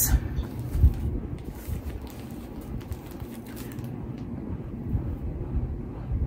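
Handling noise as plastic-wrapped fabric packs are reached for and picked up: low rumbling bumps, a few soft knocks and faint rustles.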